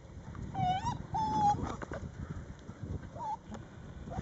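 Rhodesian ridgeback puppy whimpering: three short, high whines, two close together early and a brief one about three seconds in, over a low rumbling noise.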